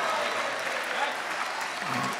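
Church congregation applauding in response to the sermon, the clapping slowly fading.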